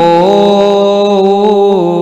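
A man's voice chanting a line of devotional scripture verse into a microphone, holding one long, steady note that dips in pitch near the end.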